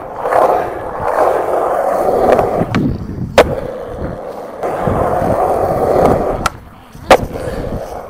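Skateboard wheels rolling over concrete, broken by a sharp clack of the board about three and a half seconds in. After more rolling come two more clacks near the end, the second the loudest.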